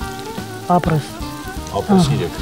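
Sizzling in a hot frying pan of vegetables as cooked rice is tipped in and worked into it, under background music with singing.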